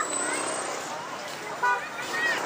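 Busy street ambience of passers-by talking and traffic, with a short vehicle horn toot near the end.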